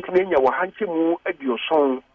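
Speech only: a man talking over a telephone line, with the thin, narrow sound of a phone call carried on air.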